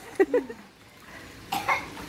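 Short non-speech voice sounds from a person: the tail of a laugh in the first half-second, then a short cough-like burst about a second and a half in.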